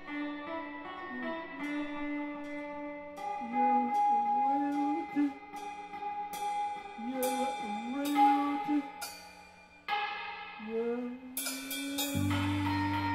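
Lo-fi improvised band music: held tones under a melody that slides up and down, with scattered cymbal hits. Near the end it fades almost away and starts again with a hit.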